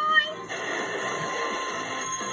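Cartoon soundtrack played through a TV speaker: a character's voice cut off about half a second in, then a steady mechanical rumble of a vehicle sound effect.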